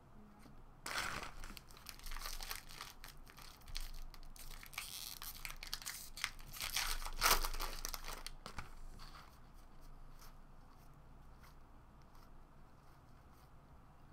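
Foil wrapper of a trading-card pack being torn open and crinkled by hand, in a run of rustling bursts that are loudest about seven seconds in, then fainter rustling.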